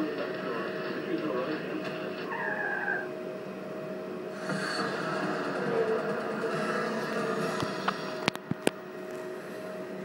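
Bookmaker's fruit-machine terminal playing its electronic game sounds as the reels spin and a win is paid, over a steady bed of held tones. Several sharp clicks come near the end.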